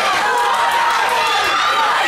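Crowd shouting and calling out during the bout, many voices overlapping without a pause.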